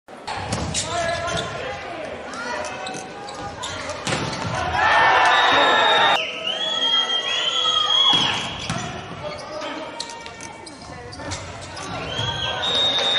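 A volleyball knocking on an indoor court: several sharp hits of the ball bouncing off the hard floor and being struck, under speech.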